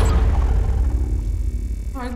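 Logo-transition sound effect: a deep rumble, loudest at the start and slowly fading away.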